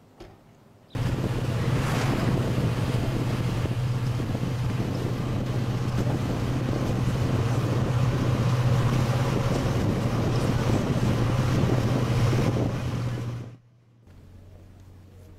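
Wind rushing and road noise heard from inside a moving vehicle, over a steady low engine drone. It starts abruptly about a second in and cuts off just before the end.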